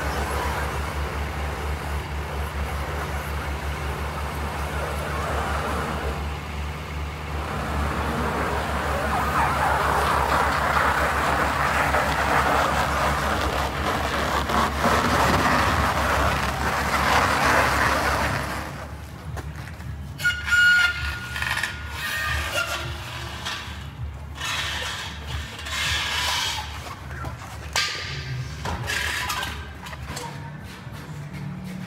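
Compact track loader's diesel engine running with a steady low throb while the machine moves a load on its forks, the engine noise growing louder partway through. About two-thirds of the way in the engine sound drops away, leaving scattered knocks and a brief high squeak.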